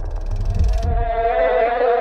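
Trailer sound design: a wavering, pitched buzzing drone over a low rumble, with a high hiss that cuts off just under a second in.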